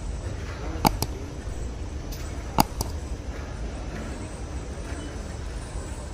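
Steady low rumble of airport terminal ambience, broken by two sharp double clicks, one about a second in and one near the middle: a mouse-click sound effect for an on-screen subscribe button.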